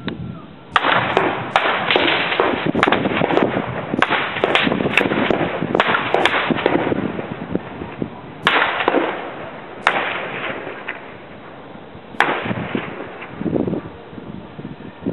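Gunfire in a firefight: rapid, crackling shots come thick for the first seven seconds or so, then three louder single cracks a second or two apart, each trailing a long echo.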